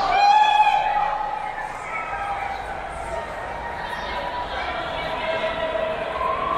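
Crowd of runners in a concrete road tunnel: many footfalls and overlapping voices, with one loud drawn-out yell in the first second, all echoing off the tunnel walls.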